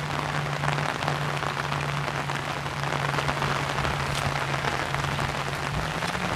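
Steady rain falling and pattering on an umbrella, with a low steady hum underneath that stops near the end.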